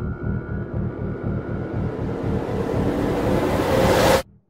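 Dark, cinematic intro music: a fast, even pulsing low drone under a rising swell of noise that builds toward the end.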